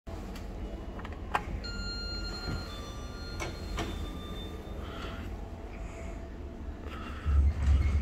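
Elevator car's sliding doors moving, with a few sharp clicks, over a steady low rumble. A heavy low thump comes near the end.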